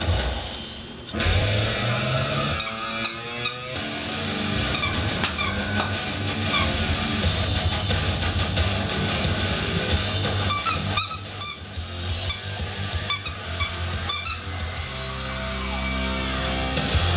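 Plush squeaky dog toy squeaking in repeated clusters of short, high squeaks as a puppy chews it, over music.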